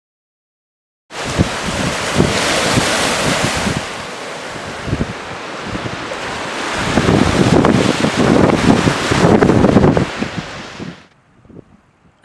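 Loud wind buffeting the microphone over choppy lake waves, cutting in suddenly about a second in. The gusts grow stronger in the second half, then fade out near the end.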